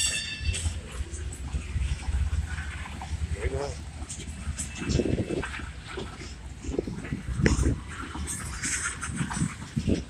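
Steady low rumble of a slow-moving freight train. Short irregular sounds come over it every few seconds.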